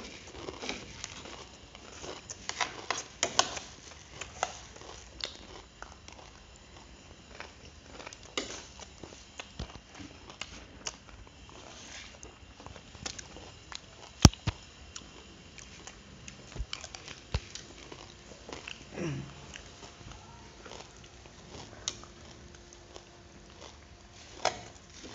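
Spoons and forks clinking and scraping on plates, with chewing, in irregular short clicks as two people eat rice and grilled pork; one sharp clink about 14 seconds in is the loudest. A short falling vocal sound from one of the eaters comes near 19 seconds.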